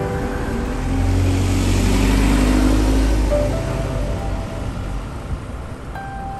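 A motor vehicle passing close by, its sound swelling from about a second in and fading after about four seconds, the engine note rising and then falling, over background music.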